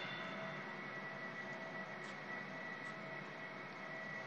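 Faint, steady room tone: an even hiss with a thin high tone held throughout, no speech and no distinct events.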